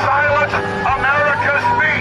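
A man shouting through a handheld megaphone, loud and harsh, with a steady low hum underneath.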